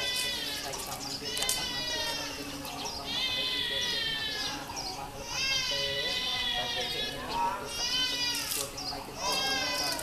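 A high voice singing in long, wavering phrases that fall in pitch, one after another, with now and then a splash of water poured from a dipper.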